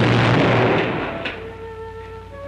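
Cartoon sound effect: a sudden loud burst of noise, like a crash, that fades away over about a second and a half. It is followed by a few soft, held orchestral notes.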